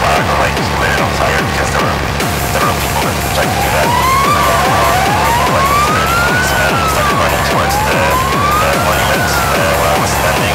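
Fast, hard-edged techno track with a steady kick drum and dense low end. From about four seconds in, a siren-like tone sweeps slowly up and back down, twice.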